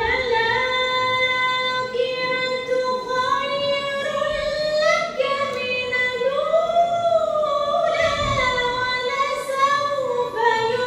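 A woman reciting the Quran in melodic tajweed style, solo and unaccompanied, drawing out long held notes with slow ornamented turns. The melody climbs to a higher phrase about halfway through and settles back down.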